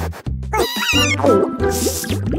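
Cartoon background music with a steady beat, over which a cartoon puppy makes gliding, whimpering vocal sounds about half a second in, followed by a short hissing sound effect near the end.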